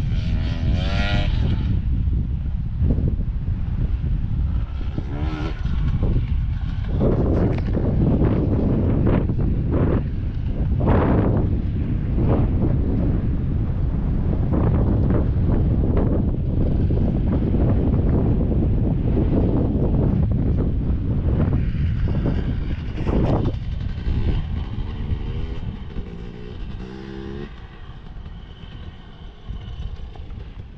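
Wind buffeting the microphone in a steady low rumble, with motocross dirt bike engines revving in the distance, rising and falling in pitch near the start, about five seconds in and again near the end.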